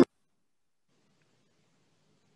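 Near silence with faint room tone, just after acoustic guitar music cuts off abruptly at the very start.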